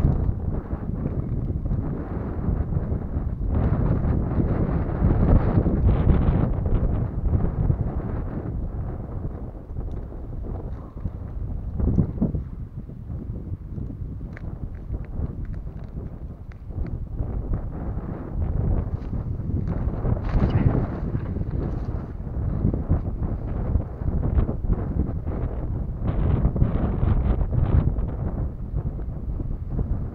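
Wind buffeting the microphone: a steady low rumble that swells and eases, with a few short knocks and rustles scattered through it.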